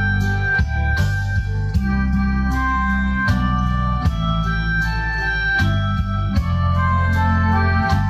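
Instrumental break of a recorded karaoke backing track: sustained electronic organ-like keyboard chords over a heavy bass line, with drum strikes every second or so and no singing.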